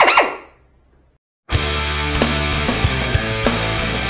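A pneumatic air drill briefly runs and winds down, its pitch falling, in the first half second. After a short cut to silence, rock music with a steady beat starts about one and a half seconds in and carries on.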